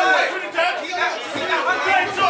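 Several voices talking and calling out over one another: spectators' chatter around a boxing ring in a hall.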